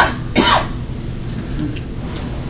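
A person coughing, with a short burst just as it begins and another about half a second in, followed by steady low room background.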